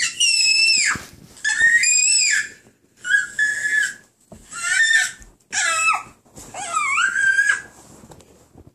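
Baby squealing: six high-pitched squeals in a row, each about half a second to a second long, with the pitch bending up and down.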